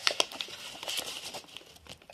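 Slime being pulled and kneaded by hand, giving a run of small sticky crackles and clicks.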